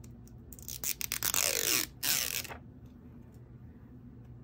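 Paper backing being peeled off a sticker: a rasping, crackling peel lasting about two seconds, in two pulls, with a few sharp ticks.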